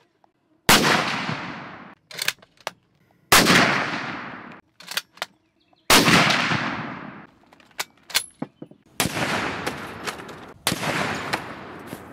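A Husqvarna Mauser bolt-action rifle in 9.3x62 Mauser firing five sharp shots, spaced a couple of seconds apart, each followed by a long fading echo. Short metallic clicks of the bolt being worked come between the early shots.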